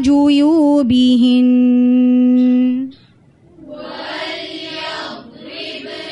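A voice reciting Qur'anic Arabic in melodic tajweed style holds one long, lightly ornamented elongated note (a madd) that ends about three seconds in. After a brief pause, a fainter and less distinct chanted recitation starts again.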